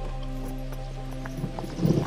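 A held music chord fading out, over the clip-clop of a horse's hooves.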